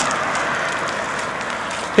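Steady rushing noise on the microphone of a handheld camera as it is carried along at walking pace.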